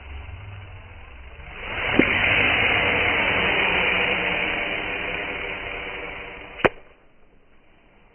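Hooded cobra hissing: a loud, breathy hiss that swells about a second and a half in and slowly fades over several seconds, cut off by a sharp click near the end.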